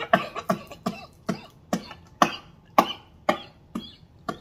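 Short, sharp mouth sounds, about two a second and weakening toward the end, from a man eating a mouthful of rotisserie chicken.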